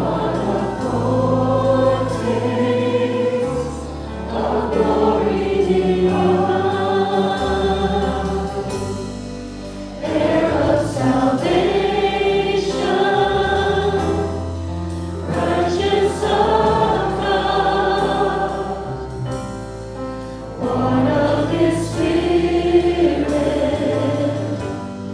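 Church congregation singing along with a worship band: many voices holding long phrases over sustained bass notes, with a short breath between phrases every few seconds.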